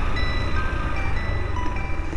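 A tinny electronic melody of single held notes, stepping from pitch to pitch like a chime tune, over a steady low engine rumble.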